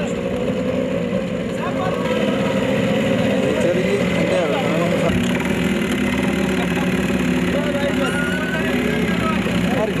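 Small trail motorcycle engines running steadily at low revs, several bikes together, with people's voices over them.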